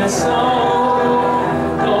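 A man singing a Chinese worship song at a microphone, with musical accompaniment, holding long sustained notes.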